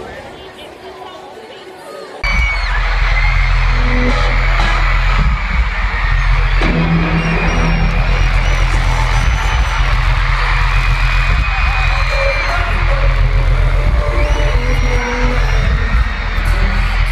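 Loud music from a stadium concert sound system with heavy bass, starting abruptly about two seconds in, over a screaming, cheering crowd.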